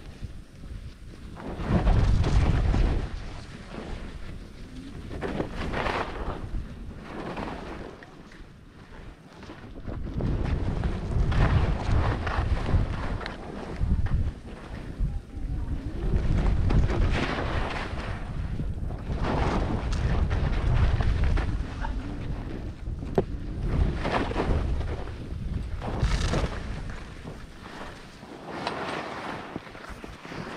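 Wind buffeting the microphone of a helmet-mounted camera on a fast ski descent, surging and fading, with the hiss and scrape of skis carving turns through chopped snow every few seconds.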